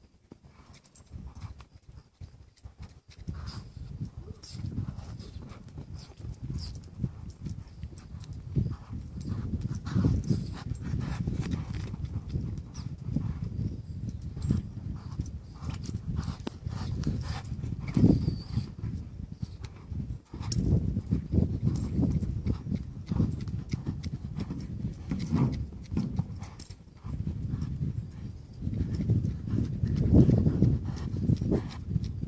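A young cutting-bred colt loping circles in deep sand, its hoofbeats thudding in a running rhythm. The first few seconds are quieter.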